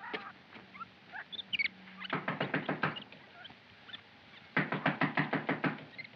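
Animal calls: two quick runs of short, evenly spaced calls, the first about two seconds in and the longer one near the end, with a few faint high chirps shortly before the first run.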